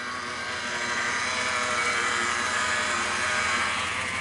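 A car driving past on the street. Its engine and tyre noise swell, hold, then ease off near the end.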